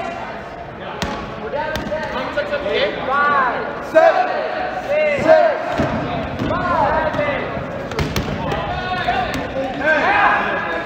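Sneakers squeaking repeatedly on an indoor gym court as dodgeball players move and stop, with a few sharp thuds of dodgeballs being thrown, hitting and bouncing.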